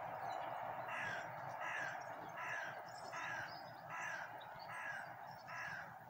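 A crow cawing seven times in an even series, about one caw every three-quarters of a second, over a steady background hum.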